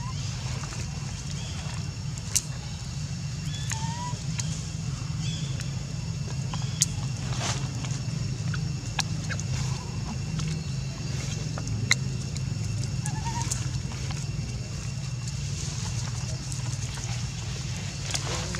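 Steady high-pitched insect drone over a low outdoor rumble, with a few sharp clicks and two brief faint chirps, one about four seconds in and one near thirteen seconds.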